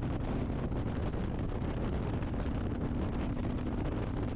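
Harley-Davidson Electra Glide V-twin engine running at highway speed under the rider, mixed with steady wind rush on the microphone and road noise.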